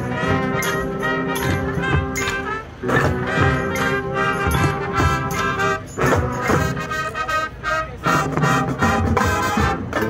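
Marching band playing: brass chords held over a steady drum beat, with a brief break about three seconds in before the band comes back in.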